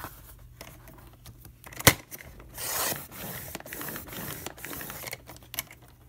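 A sharp click a little under two seconds in, then the blade of a sliding paper trimmer drawn through chipboard in one pass of about three seconds: a dry, rasping scrape.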